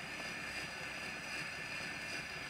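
Surface noise of a pre-1910 shellac disc playing on an HMV Monarch horn gramophone: a steady hiss with light crackle from the needle running in the groove.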